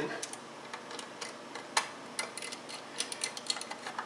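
Small screw being turned in by hand with a screwdriver into the metal back plate of a test fixture: a run of light, irregular clicks, with one sharper click a little under two seconds in.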